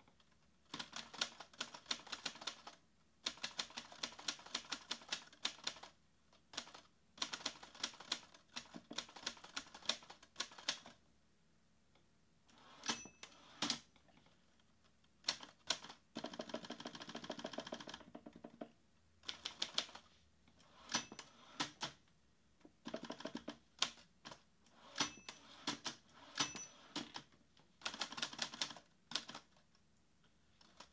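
Manual typewriter typing in bursts of quick key strikes with short pauses between them, a longer unbroken rattle about sixteen seconds in, and a short bell ding about twenty-five seconds in.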